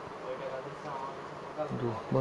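A faint, steady buzzing hum under faint, indistinct voices, with a voice growing clearer near the end.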